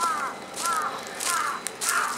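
A crow cawing four times in an even series, the caws a little over half a second apart.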